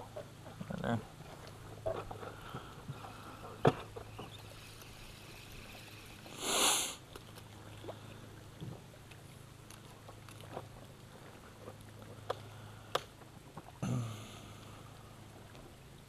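Small clicks and knocks from a spinning rod and reel being handled in a boat, over a steady low hum, with one sharp sniff about six and a half seconds in.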